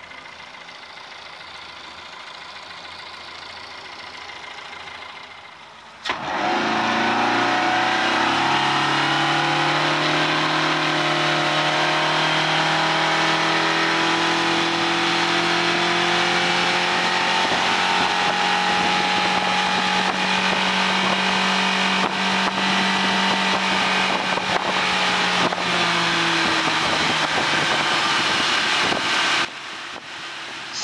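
Yamaha F130 four-stroke outboard idling, then put to full throttle about six seconds in: the engine note climbs quickly as the boat accelerates, then holds steady at top speed, about 5800 RPM, with wind and water rushing. The sound drops off abruptly near the end.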